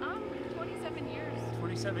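A steady low motor hum with several steady tones, like an idling engine or machine running, under a voice that speaks near the end.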